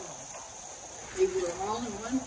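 Insects in the surrounding trees keep up a steady, high-pitched chirring, with a voice faintly heard speaking over it.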